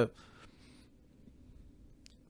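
A pause in speech: a man's drawn-out word breaks off at the very start, then a faint soft noise for about half a second, then quiet room tone.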